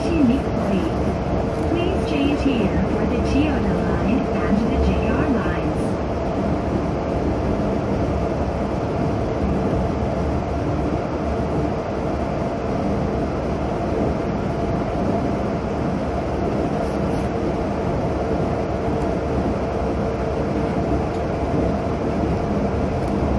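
Cabin running noise of a Nippori-Toneri Liner 330-series rubber-tyred automated guideway train travelling at speed: a steady rumble with a constant whine held throughout.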